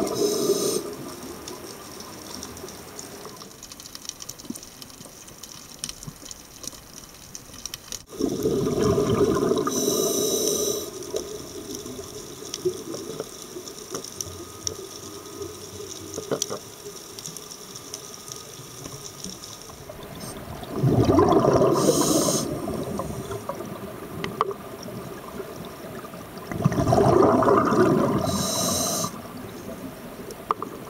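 Scuba diver breathing through a regulator underwater: four rumbling bursts of exhaled bubbles, each two to three seconds long, at the start and about 8, 21 and 27 seconds in, with a steady hiss between them.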